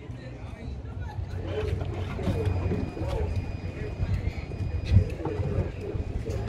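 Power sliding side door of a VW Caravelle closing after a key-fob press: a low rumble as it runs shut, with a faint high tone sounding on and off partway through. It ends in a thump as the door latches about five seconds in.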